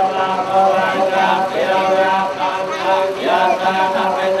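Buddhist monks chanting together in a steady, drawn-out recitation, amplified through a microphone: a blessing chant during a ritual bathing.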